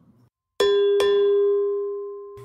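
A bell-like chime, used as a transition sound, struck twice in quick succession about half a second in. It then rings on as one clear tone and slowly fades.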